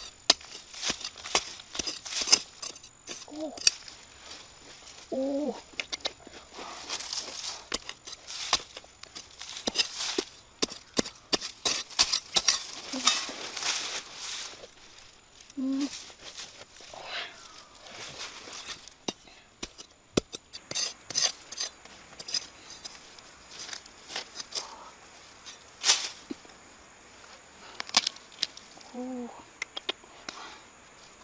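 Hands scraping and scratching in dry, crumbly soil and dry twigs, digging out a root tuber. The scratching and rustling come in irregular bursts, with sharp clicks of dirt and sticks.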